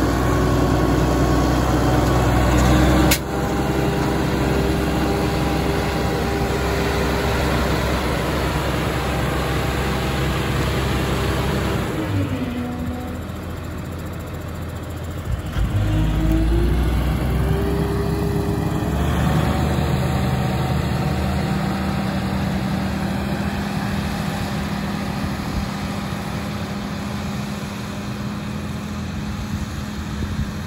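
Self-propelled flax puller's engine running steadily as it pulls flax; its pitch drops about twelve seconds in and climbs back up a few seconds later.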